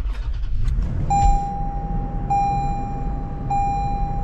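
The 2024 Toyota 4Runner's 4.0 L V6 starting and settling into a low idle, heard from inside the cabin. From about a second in, a dashboard warning chime sounds a steady tone that repeats about every second and a quarter.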